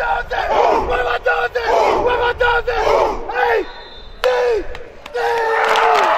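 A football team's players shouting together during pregame warm-up: a run of short group shouts in a call-and-response rhythm, a brief lull around the middle, then one long group yell held near the end.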